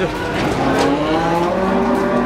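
Cattle mooing: one long, drawn-out call that begins about half a second in and slowly rises in pitch.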